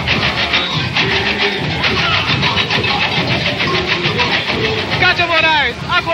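A samba school bateria (percussion corps) playing a fast, even beat of dense drum strokes. Squeaky glides falling in pitch come in near the end.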